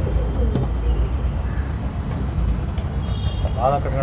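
Domestic tumbler pigeon cooing softly over a steady low background rumble. A man's voice starts near the end.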